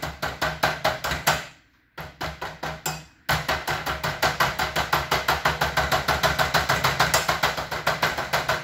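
Rapid, even tapping on a fluorescent tube, about eight knocks a second, with two brief pauses. The tube is dead at one end, and the knocking is meant to jolt its burnt-out electrode.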